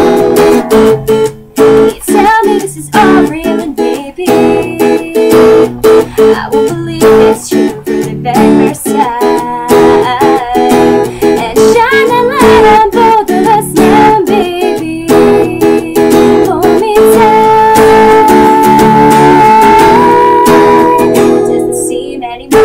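Acoustic guitar strummed in chords, accompanying a woman's singing voice, with one long held sung note in the last few seconds.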